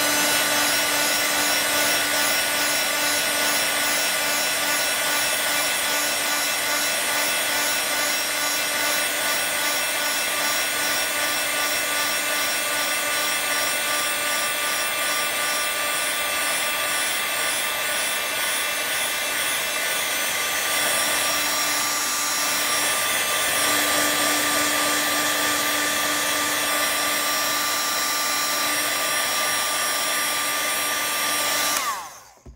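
Handheld craft heat tool running steadily, its fan giving a constant whir with a steady hum, as it dries shimmer spray on shrink plastic.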